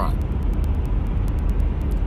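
Steady low rumble with an even hiss over it, and faint quick ticks high up.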